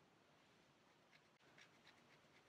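Near silence: room tone, with a few faint soft ticks in the second half.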